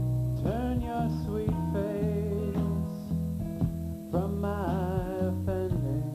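Slow rock song with plucked acoustic guitar over steady low bass notes. A voice sings two long, wavering phrases without clear words, the second starting about four seconds in.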